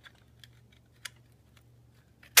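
A few faint, sharp clicks from the metal clamshell shell of a pair of Apex collapsible pocket opera-glass binoculars being handled in the fingers, the sharpest about halfway through.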